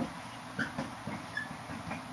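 Marker pen writing on a whiteboard: a quick run of short, irregular taps and scrapes, with a couple of brief high squeaks from the tip.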